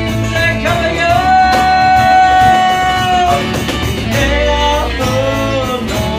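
Live acoustic band playing: strummed acoustic guitars, upright bass and a cajon keeping the beat, under a lead melody that holds one long note for about two seconds before moving on to shorter phrases.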